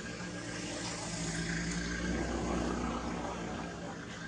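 A steady engine drone passing by, growing louder toward the middle and fading near the end.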